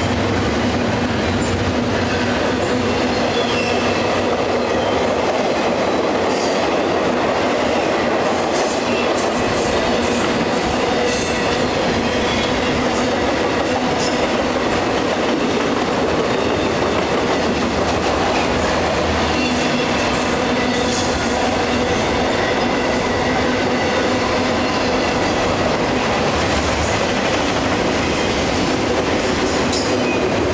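Double-stack intermodal freight train's well cars rolling past on the rails: a loud, steady rumble of wheels on track. Brief high-pitched wheel squeals come and go, several clustered about a third of the way in and again about two-thirds through.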